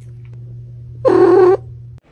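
A cat gives one short meow a little over a second in, over a low steady hum.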